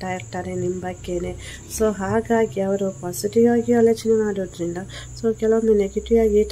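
A voice in short, held, repeated phrases over a low steady drone, with a steady high-pitched whine throughout.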